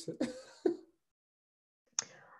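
A person's brief laugh: two short bursts of voice within the first second.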